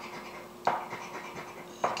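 A coin scraping the scratch-off coating from a paper lottery ticket, with two sharper strokes that trail off, the first under a second in and the second near the end.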